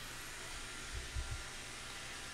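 Steady faint hiss and hum of room tone picked up by the narrator's microphone, with a few soft low thumps about a second in.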